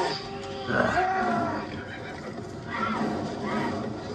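Film trailer soundtrack playing through a TV's speakers: tense orchestral score with animal cries over it, one bending cry about a second in and another near three seconds.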